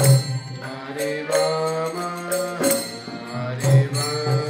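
Harmonium playing a stepping melody of sustained reedy tones as kirtan accompaniment, with a percussion strike about every second and a quarter.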